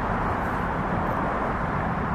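Steady outdoor background noise: a low rumble with a hiss above it, and no distinct knocks or blows.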